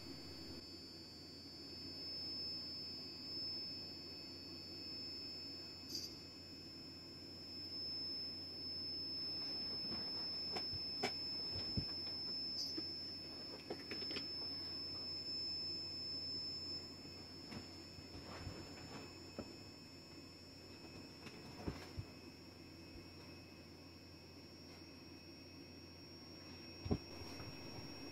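Quiet room tone: a steady, faint high-pitched whine and a low hum, with a few scattered light clicks.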